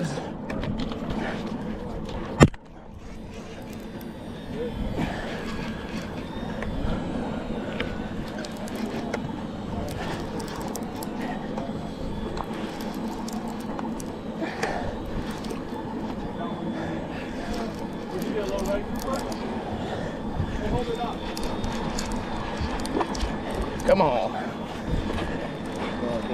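Conventional lever-drag fishing reel being cranked steadily, winding in line with a fish on from deep water. There is a sharp knock about two and a half seconds in, and voices talk in the background.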